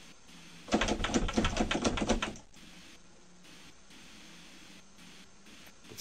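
A metal door lever handle being rattled and jiggled: a rapid run of clicking and clattering, about ten clicks a second, that starts about a second in and lasts about a second and a half.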